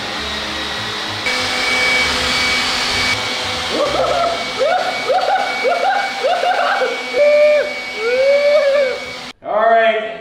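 A cordless electric leaf blower running steadily, a rushing blast of air with a thin whine. From about four seconds in, a voice lets out about six short cries over it, and everything cuts off suddenly near the end.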